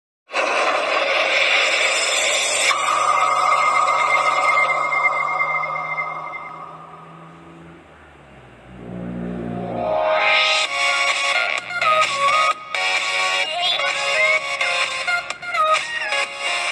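Intro music in two parts: a dense, bright swell with a held high tone that fades away by about eight seconds, then a melodic tune with regular accents that starts around ten seconds in.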